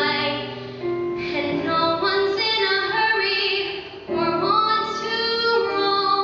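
A young female singer's solo voice singing a Broadway show tune into a microphone, in long held notes that move up and down in pitch, with a short breath about four seconds in.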